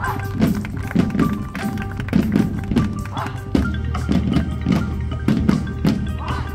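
High school marching band playing its field show, led by percussion: mallet instruments and drums strike a repeated beat over sustained tones. A low held note comes in about halfway through.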